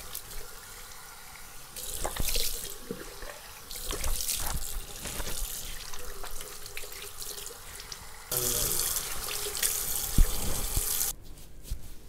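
Water running from a bathroom tap into the washbasin while the face is splashed and rinsed, with short splashes over a steady flow. The flow gets louder about eight seconds in and stops abruptly about a second before the end.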